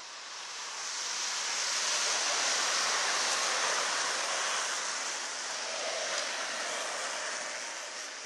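Longboard wheels rolling on asphalt as riders go past: a rough, even hiss that swells over the first couple of seconds and slowly fades away.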